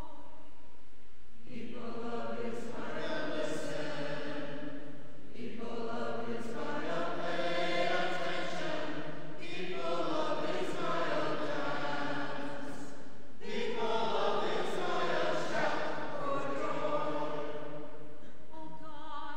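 Choir singing the responsorial psalm after the reading, in four sung phrases of about four seconds each with brief breaks between them.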